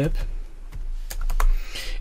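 Typing on a computer keyboard: a quick run of separate key clicks as a word is typed.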